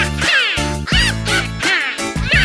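Cartoon witch cackling, a run of quick high laughs that rise and fall, over an upbeat children's song backing track with a steady bass beat.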